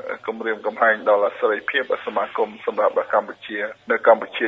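Speech only: a voice talking continuously in Khmer, with the thin, narrow sound of a radio broadcast.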